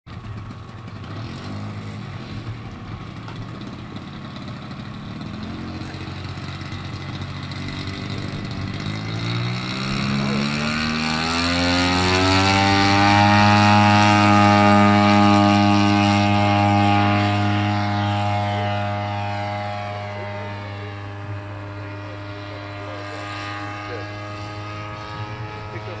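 Engine and propeller of a large-scale RC Bell P-39 Airacobra model on its takeoff run. It starts at low throttle, then the pitch climbs steadily over several seconds as it throttles up, holding a loud, steady drone as the plane rolls past close by. It then fades gradually as the plane climbs away.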